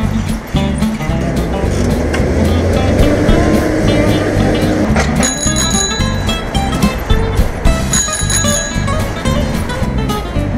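Background music with a steady beat, over which a bicycle bell rings twice, about five seconds in and again about eight seconds in.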